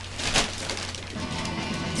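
Wrapping paper crinkling and rustling as a present is unwrapped, with a brief louder crinkle about a third of a second in. Faint background music with held notes sits underneath.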